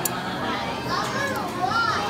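Busy buffet dining-room chatter with high-pitched children's voices rising and falling, and a single sharp clink right at the start.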